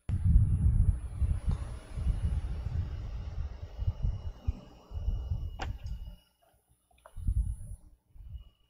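Low, muffled bumping and rumbling handling noise picked up by a church microphone, with a sharp click about five and a half seconds in and another near seven seconds.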